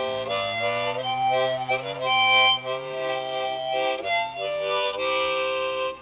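Harmonica music playing sustained chords with a lower line that bends in pitch, cutting off sharply.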